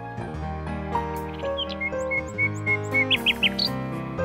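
Instrumental music in held chords with a nightingale singing over it: a run of short repeated high notes about halfway through, then a few quick rising whistles near the end.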